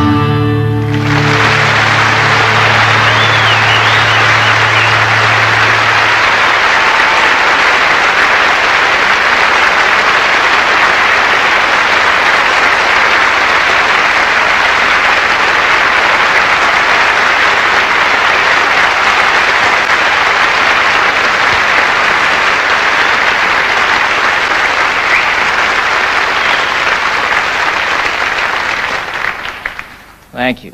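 Audience applauding at the end of a live song, a long even stretch of clapping that dies down near the end. The song's last low note rings out under the applause for the first few seconds.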